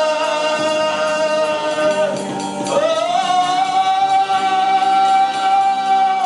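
A man singing long held notes into a microphone over electronic keyboard chords, the held note sliding up a step about three seconds in and dropping back near the end.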